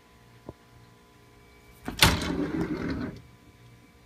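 Wooden kitchen drawer pulled open about two seconds in, sliding on its runners with a sharp start and a scrape lasting about a second; a small click comes about half a second in.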